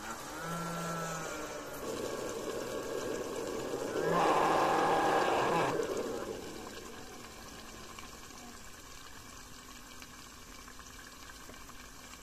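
Stepper motor submerged in boiling liquid nitrogen, driven by a Trinamic driver in stealthChop mode: a whine that bends in pitch at first, then a louder rough buzz from about four to six seconds in that dies away. The nitrogen bubbles faintly throughout.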